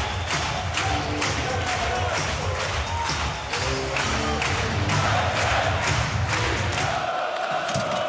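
Ice hockey arena sound after a home goal: music with a steady beat and the crowd cheering and chanting. It cuts off about a second before the end.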